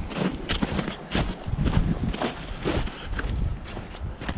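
Footsteps of a person walking over snowy, rutted dirt, about two steps a second, with a low rumble of wind on the microphone.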